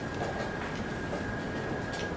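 Steady background hum of the playing hall with a thin, high steady whine through it. Near the end comes a faint click from play at the chess board.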